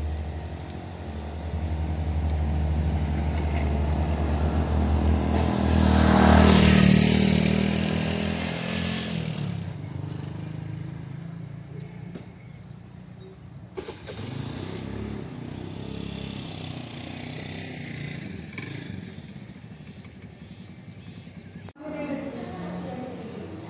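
A motorcycle passing along the road, its engine getting louder to a peak about seven seconds in and then fading away, leaving quieter outdoor background with a single click about fourteen seconds in.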